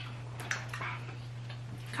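A few faint clicks and rustles of fast-food containers and wrappers being handled, over a steady low hum.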